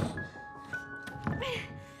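Background drama music of long held notes. A hand pounds once on a door right at the start, and a woman gives a brief falling cry about a second and a half in.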